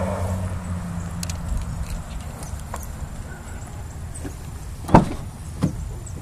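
Car door being opened: a sharp latch click about five seconds in and a softer knock just after, over a steady low hum that fades after the first two seconds.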